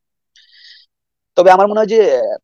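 A short pause in a conversation, then a person's voice starts speaking loudly about one and a half seconds in, opening on a drawn-out vowel.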